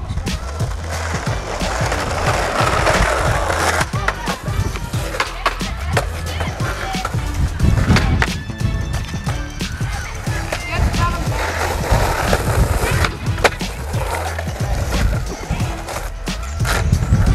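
Skateboards on an asphalt street: urethane wheels rolling with a gritty hiss, broken by repeated sharp clacks of the wooden decks hitting the ground as tricks are tried and landed.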